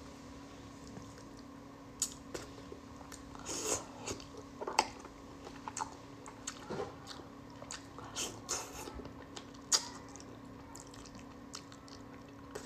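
Mouth sounds of eating braised plaice tail: irregular wet chewing and biting, with scattered short clicks as the fish and its fin are bitten off and chewed.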